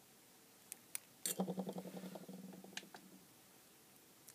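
Faint clicks of crocodile-clip leads being clipped onto a small LED strobe circuit board, followed by a faint, evenly pulsing low buzz that fades out over about a second and a half.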